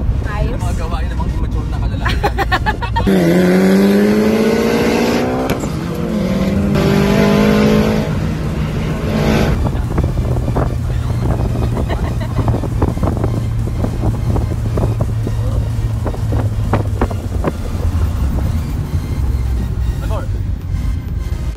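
Car engine heard from inside the cabin, accelerating: its pitch rises steadily about three seconds in, breaks off, and climbs again briefly a few seconds later. It then settles into a steady low drone at cruising speed.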